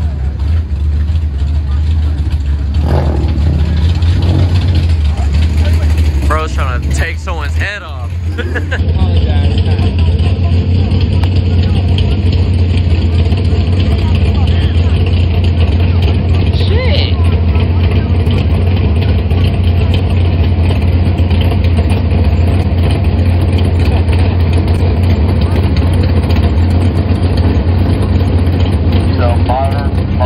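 Car engines running at idle, a steady low rumble throughout, with indistinct voices mixed in.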